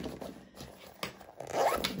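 Zipper on a vinyl bag being run, a scratchy rasp of the zipper teeth.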